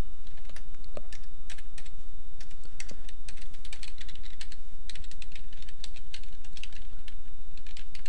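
Computer keyboard being typed on, quick irregular keystrokes with short pauses between runs, over a steady low hum.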